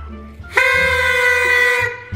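Several tinsel-fringed paper party horns blown together: one steady blast starting about half a second in and lasting just over a second.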